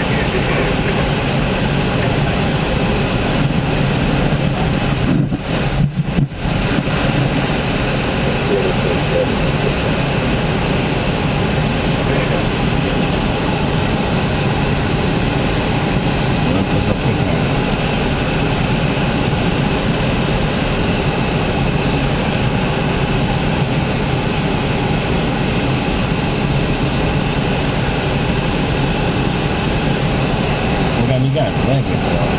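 Steady rush of air over the canopy of an ASH 25 sailplane on aerotow, with the steady drone of the tow plane's engine under it. The sound dips briefly twice about five to six seconds in.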